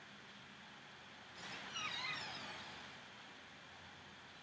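Steady low hiss of background noise. About a second and a half in comes a brief, high, wavering chirp lasting about a second.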